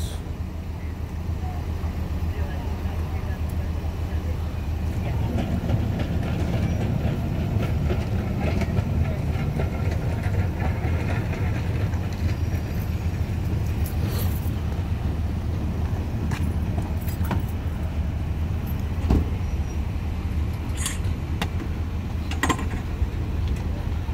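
Steady low engine rumble from idling emergency vehicles, with faint voices in the background and a few short clicks.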